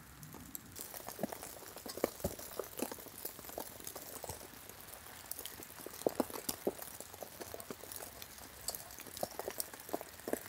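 Small wood fire in a Fire Box stove crackling and popping irregularly as fat wood catches and a Swedish fire torch starts to burn.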